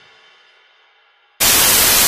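The faint tail of the previous music dies away, then about one and a half seconds in a loud burst of television static hiss cuts in abruptly, used as a transition effect.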